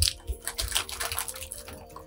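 Plastic candy bag crinkling in irregular bursts as a hand rummages inside it for gummy candies.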